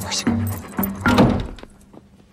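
A dog barking briefly over light background music; the sound drops away about one and a half seconds in.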